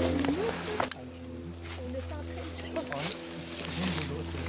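Clothing rustling and scraping against the microphone as the hunters move off, with a sharp knock just before the one-second mark, over a steady low drone and faint murmured voices.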